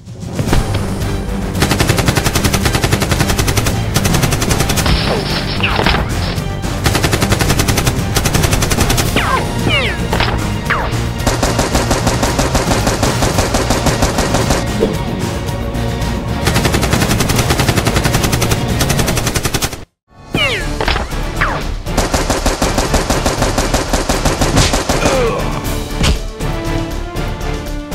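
Rapid automatic gunfire sound effects for a Nerf battle scene, dense strings of shots over background music. The sound cuts out for a moment about three quarters of the way through, then the firing resumes.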